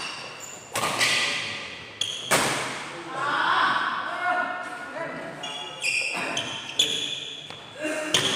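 Badminton rackets smacking a shuttlecock: a few sharp hits in the first couple of seconds, echoing in a large hall. Players' voices follow.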